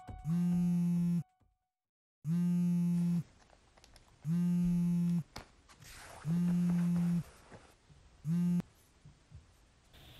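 Mobile phone vibrating with an incoming call: a low, steady buzz about a second long, repeating every two seconds, five times, the last one cut short.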